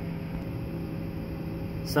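Steady low electrical hum with a few faint, unchanging tones, from the running equipment of a DIY 18650 battery power wall.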